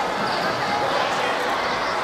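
Many children's voices shouting and cheering at once in a large, echoing gymnasium, a steady crowd noise with no clear single speaker.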